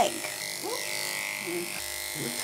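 Electric dog-grooming clippers running with a steady buzz while shaving a dog's matted coat around the leg.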